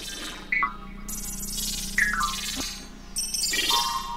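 Electronic ensemble music played on synthesizers: short notes that drop quickly in pitch and swells of hiss over a steady low hum.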